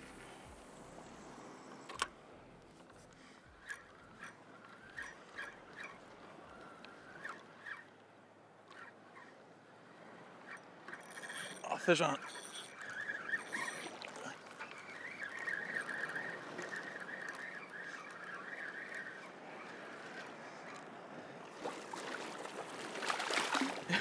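A Penn spinning reel's drag gives line in a steady buzz for about six seconds as a hooked ladyfish runs. Before that come scattered clicks of the reel being worked, and water splashing builds near the end as the fish is brought in.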